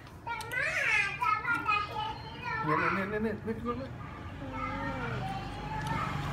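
A young child's high-pitched voice, rising and falling sharply in pitch, for about the first three and a half seconds, then quieter voices over a low steady hum.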